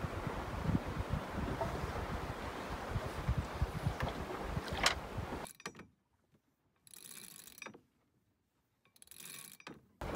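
Wind buffeting the microphone in low rumbling gusts for about five seconds. Then near silence, broken twice by short bursts of a sheet winch clicking and whirring as line is hauled in to hoist the spinnaker.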